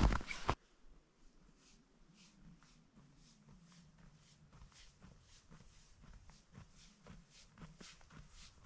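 Faint footsteps in fresh, packed snow, soft crunches at a steady walking pace.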